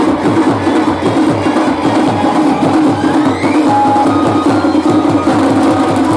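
Loud Banjara folk dance music driven by a fast, steady drumbeat, with a short rising tone about three and a half seconds in.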